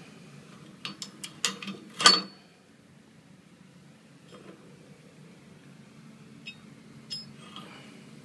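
Steel grip hub and loading pin clinking together as they are handled: a quick run of metal clicks about a second in, ending in one loud clank with a brief metallic ring just after two seconds, then a few faint clicks later.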